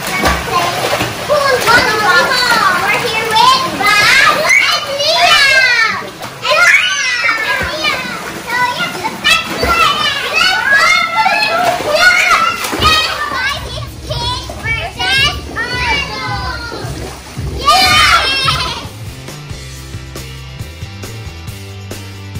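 Children shouting and shrieking excitedly while playing in a pool, with water splashing. Background music comes in faintly partway through and is all that is left for the last few seconds.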